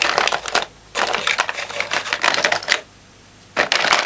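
Rummaging through a stash of makeup: lipstick cases and other small hard items clicking and clattering against each other. The clatter comes in three bursts, with a short pause about three seconds in.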